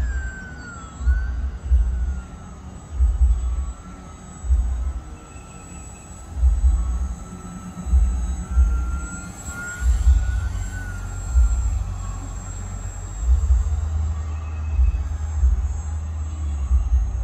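Motor of a radio-controlled Fokker model biplane in flight: a thin whine whose pitch wavers up and down as the plane turns and passes. Wind buffets the microphone in irregular low gusts.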